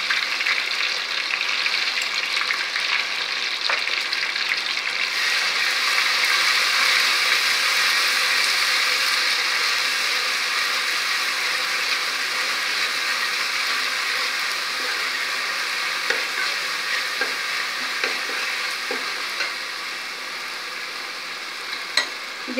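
Ground green chilli, coriander and mint paste sizzling in hot oil in a metal pot as it is stirred with a steel ladle, with a few light ladle knocks. The sizzle is loudest a few seconds in and slowly dies down toward the end.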